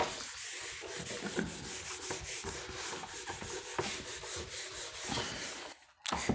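A steady rubbing, scratching sound with many small clicks through it, ending shortly before speech resumes.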